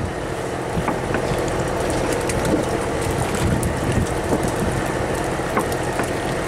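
Fishing boat's engine running steadily, with a few scattered light knocks over it.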